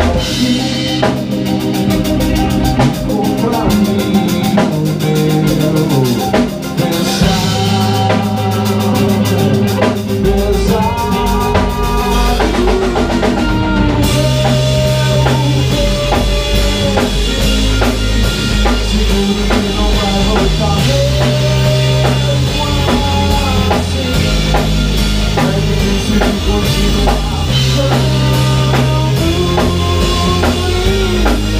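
Rock band playing an instrumental passage together: drum kit, bass, electric guitars and a synth keyboard, with bass notes changing every second or two under a guitar or keyboard melody. About halfway through the drums open up with heavier cymbals and the playing gets fuller.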